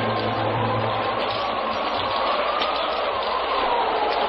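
Steady hiss of a rain sound effect, a downpour, with a faint whistling tone that slowly rises and falls.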